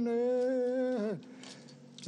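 Ye'kuana ceremonial dance chant: voices hold one long sung note for about a second, then glide down and break off, leaving a quieter pause before the next phrase.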